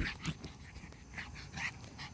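Yorkshire terrier making a few short, soft whimpers, spaced about half a second apart.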